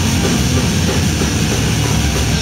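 Hardcore band playing live and loud: distorted electric guitars over a drum kit with crashing cymbals, in a dense, unbroken wall of sound.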